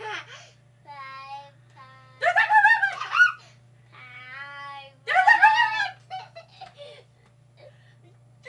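A small boy squealing with high-pitched laughter in several bursts, the loudest about two seconds in and again about five seconds in, trailing off into short giggles near the end.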